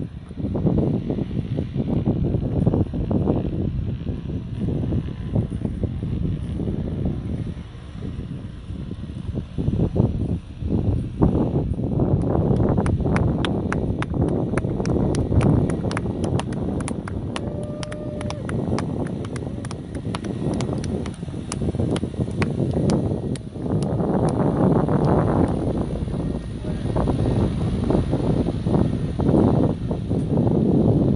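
Wind buffeting the microphone in gusts, a loud low rumble rising and falling in waves. From about twelve to twenty-three seconds in, a rapid, even run of sharp clicks sounds over it.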